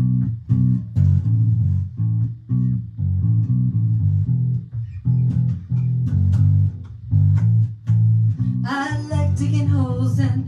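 Acoustic guitar strumming over an electric bass guitar playing a steady, rhythmic line, with the bass the loudest part. A woman's singing comes in near the end.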